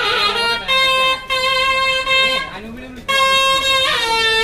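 A reed wind instrument playing a slow melody of long held, high notes. Each note slides into pitch, with short breaks between the phrases.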